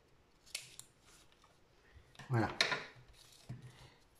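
Scissors snipping through paper: a few short, crisp snips in the first second or so.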